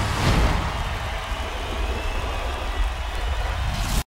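Title-sequence sound effects: a swish about a third of a second in, then a deep, steady low rumble with a faint hiss above it that cuts off suddenly at the end.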